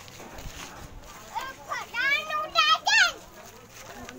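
A young child's high-pitched voice calling out in several short wavering cries, starting about a second and a half in and ending near three seconds, over low street background noise.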